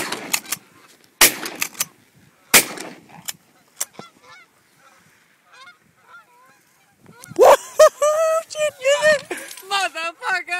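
Three shotgun shots about a second and a quarter apart, fired at a flock of Canada geese, with the geese honking; the honking is faint in the middle and loud from about seven seconds in.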